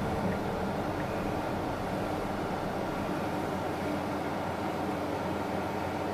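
Steady cabin noise inside a moving 2020 Tesla Model S: a low hum of tyres and road with the climate fan blowing, and no engine sound from the electric drive.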